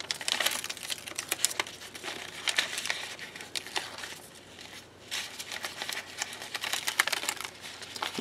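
Printable sticker paper being peeled off its glossy release liner (backing paper) by hand: crackly paper rustling and tearing as the sticky layer comes away in strips, with a short lull about halfway through.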